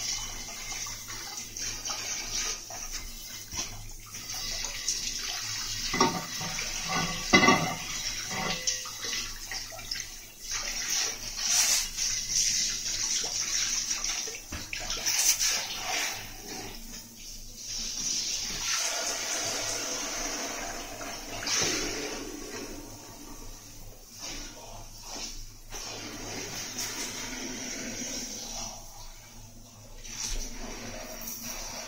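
Water spraying from a hand-held shower hose onto a motorcycle wheel rim and tyre, a steady hiss as it washes blue tyre sealant off into a toilet bowl. A few knocks come as the wheel is handled.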